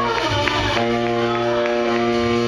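A live band playing, with a long held note coming in about three-quarters of a second in over light, repeated cymbal or drum taps.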